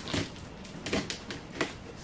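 Blade cutting open the packing tape on a cardboard box: a few sharp clicks and scrapes as the tape and cardboard give.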